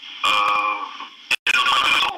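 A person's voice speaking over a choppy online call connection, the audio cutting out completely for a moment partway through.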